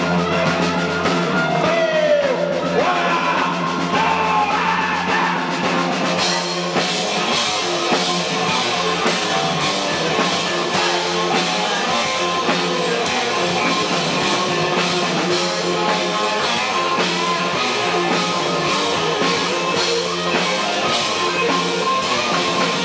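Live rock band playing loud in a small club: drums, electric guitars, bass and sung vocals. The cymbals and drums grow much busier about six seconds in.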